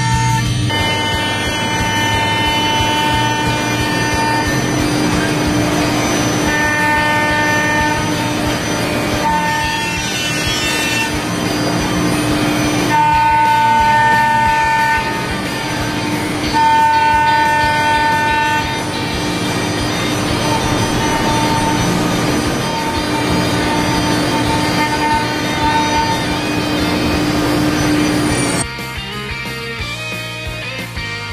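5-axis CNC machining centre milling an aluminium alloy part with a 16 mm end mill at 18,000 rpm: a steady high whine, with a higher ringing tone and overtones that come and go every few seconds as the cutter engages and leaves the cut, over a hiss of coolant spray. The milling cuts off suddenly near the end.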